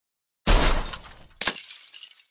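Two sudden crashes. The first, about half a second in, is loud and fades out over about a second; the second, shorter one comes about a second later.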